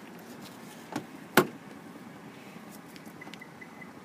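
Two clicks as the car is unlocked with its key fob, a small one about a second in and a sharp, loud one about a second and a half in, from the 2014 Subaru Outback's power door locks.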